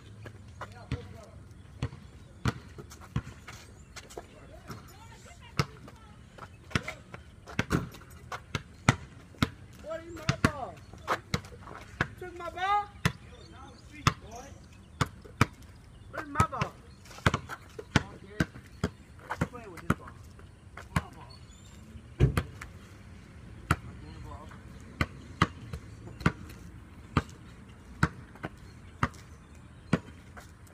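A basketball bouncing on a concrete court as it is dribbled, a run of sharp bounces at an uneven pace of roughly one to two a second. One heavier, deeper thump comes about two-thirds of the way through.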